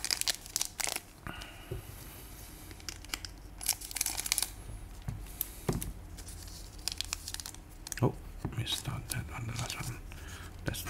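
A foil trading-card booster pack being crinkled and torn open by hand: sharp crackles in the first second, then a longer tearing sound, and more crackling of the wrapper near the end as the cards come out.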